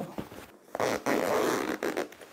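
A zip slider drawn along a zip's teeth: one rasp of about a second, starting just under a second in.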